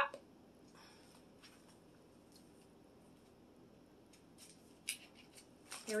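Faint, scattered scratching and scraping of fingers and nails picking at a small cardboard product box that is hard to get open, with a slightly sharper scrape about five seconds in.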